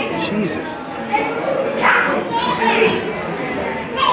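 Indistinct voices of spectators in an ice hockey arena, with a louder, higher-pitched call about two seconds in.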